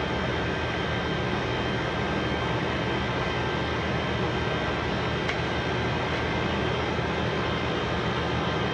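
Steady mechanical drone from a running machine, with a thin constant high whine over it and one faint click about five seconds in.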